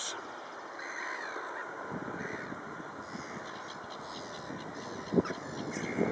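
Black-headed gulls and jackdaws calling, many short calls overlapping. A single brief thump about five seconds in.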